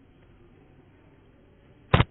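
Faint room tone, then a single sharp, loud click just before the end.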